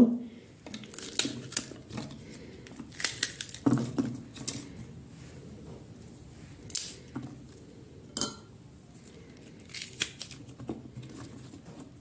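Green peppers being sliced by hand with a knife over a plastic food-processor bowl: scattered, irregular crisp cuts and snaps, with pieces dropping into the bowl.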